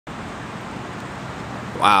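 Steady outdoor background noise, an even hiss with no distinct events. A man's voice says "wow" near the end.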